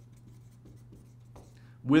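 Dry-erase marker writing on a whiteboard: a run of short, faint scratchy strokes as a word is lettered in capitals.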